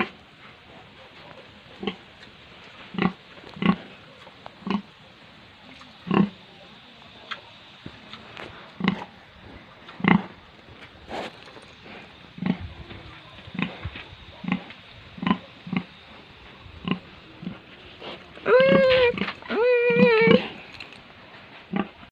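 Breeding sows grunting: short, low grunts at irregular intervals of about a second. Near the end come two longer, higher-pitched calls.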